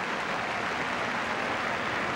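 Football stadium crowd applauding and cheering in a steady wash of noise, in response to a fine save by the goalkeeper.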